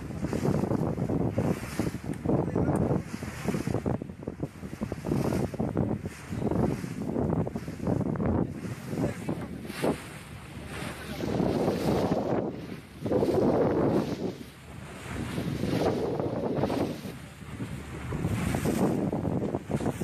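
Wind buffeting the microphone over the noise of open sea, in gusts that swell and fade every second or two.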